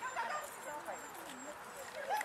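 Faint voices with no words clear, wavering and breaking up like speech.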